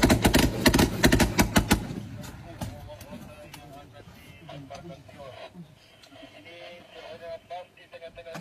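Automatic gunfire: a rapid run of shots at several a second for about the first two seconds, then stopping. Quieter after that, with faint distant voices and a few scattered shots.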